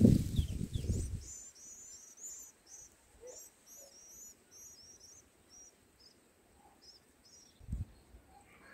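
White-eye nestlings begging at the nest as the parent feeds them: a run of short, high, thin cheeps, about three a second. A low rumble fills the first second and a short low thump comes near the end.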